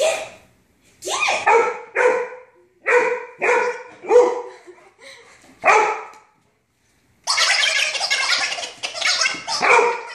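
A dog barking: about seven separate barks roughly a second apart, then a longer unbroken run of sound from about seven seconds in.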